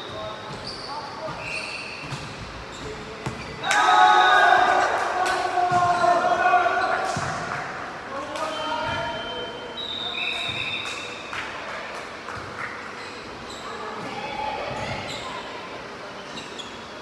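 Volleyball play on a hall court: sharp ball hits and short high squeaks of sneakers on the floor. About three and a half seconds in, a loud burst of players shouting and cheering lasts a few seconds, echoing in the large hall.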